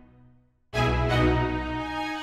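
Background music: a chord fades away to a brief near-silent gap, then a loud new chord strikes about two-thirds of a second in and rings on.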